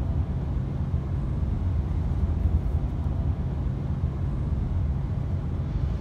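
Steady low rumble of road and engine noise heard inside the cab of a Ram pickup truck travelling at highway speed.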